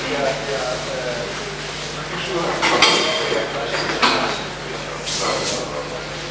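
Indistinct off-microphone talk from several people, with two sharp clinks or knocks about three and four seconds in and a short rustle near the end.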